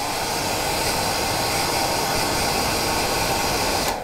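Hairdryer blowing steadily for about four seconds, then cut off, blowing back the partridge hackle fibres on a freshly tied fly.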